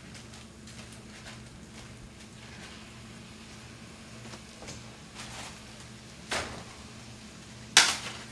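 Quiet kitchen handling sounds as cooked chicken is emptied from a plastic bag into a cast iron skillet, faint over a steady low hum. Two sharp clicks come near the end, the second louder, as containers are handled.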